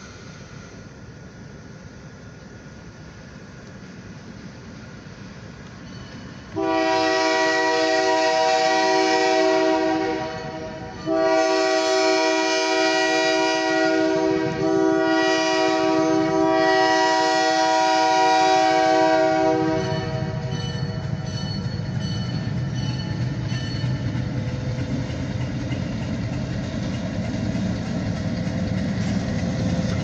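Diesel locomotive's multi-note air horn sounding for the grade crossing as the train approaches: a long blast about six seconds in, a short break, then a second, longer sounding with slight dips, ending about twenty seconds in. Afterwards the locomotive's diesel engine rumbles, growing louder as it nears the crossing.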